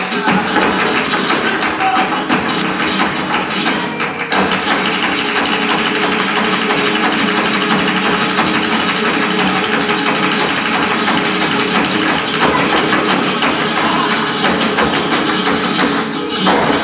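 Live flamenco music: rhythmic palmas hand-clapping and a dancer's footwork strikes over flamenco guitar. The percussive strikes are sharpest in the first four seconds.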